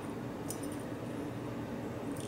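Faint metallic clicks of keys being handled against a Best interchangeable lock core, the clearest about half a second in, over a steady low hum.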